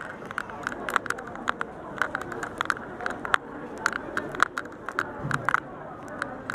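Busy fast-food restaurant dining room: a steady murmur of diners' chatter with frequent sharp clicks and clatter, several a second.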